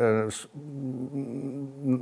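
A man's drawn-out hesitation sound, a held 'eee' that fades to a quieter steady hum, with a short hiss of breath about a third of a second in.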